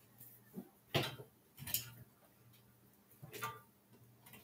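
A few short clicks and knocks, the loudest about a second in, as a cable is plugged into a computer.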